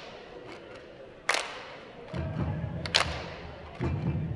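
Sharp percussion strikes at an even pace, about one every second and a half, accompanying hula, with a low chanting voice entering about halfway through.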